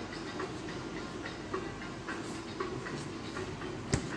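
Steady background hubbub of a busy appliance showroom, with faint scattered ticks and one sharp click near the end.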